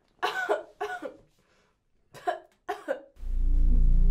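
A young woman coughing and gagging over a toilet in two short bouts. About three seconds in, a loud low droning music note comes in and holds.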